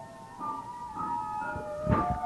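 Violin and piano playing a slow, lyrical passage of held notes, softer for a moment early on, with a louder struck chord near the end.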